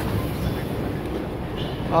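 Paris Métro train running alongside the station platform, a steady low noise of wheels and motors.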